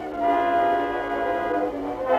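Opera orchestra, brass to the fore, holding a steady sustained chord that enters just after the start. The sound has the thin quality of an early-1920s acoustic recording.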